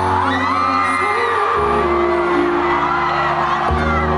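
Live concert: sustained keyboard chords played through the PA, changing chord twice, while a crowd of fans screams and cheers over them.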